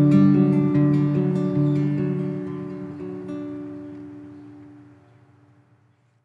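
Acoustic guitar playing the closing notes of a song: a few last notes are struck, then the final chord rings out and fades away to nothing near the end.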